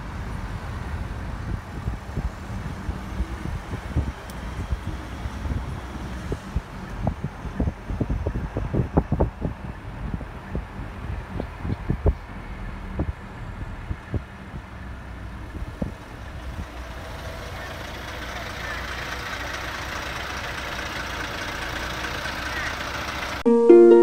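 Steady low rumble of a moving car's engine and road noise, with a run of irregular knocks and clicks through the middle. Louder traffic noise builds over the last few seconds.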